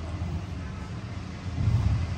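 Steady low background rumble, briefly louder near the end.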